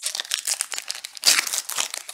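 The plastic wrapper of a trading-card pack crinkling in the hands as it is torn open: a dense, irregular run of crackles.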